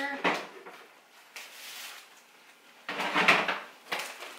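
Groceries being stowed in a lower kitchen cabinet: a short knock just after the start, a soft rustle, then a louder rustle of packaging about three seconds in and another knock of the wooden cabinet door near the end.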